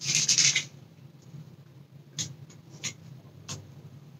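A short rustle, then small plastic containers being handled: a few light clicks and taps from a jar and a pill bottle, about two-thirds of a second apart, in the second half.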